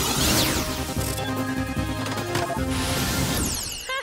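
Cartoon time-travel sound effect: sweeping, swooshing electronic glides layered over a busy music cue, cutting off just before the end.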